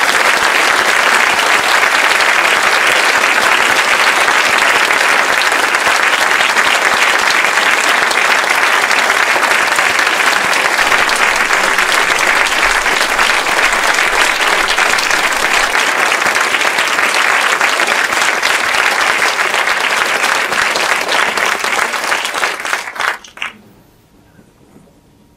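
Audience applauding, steady and sustained, dying away near the end.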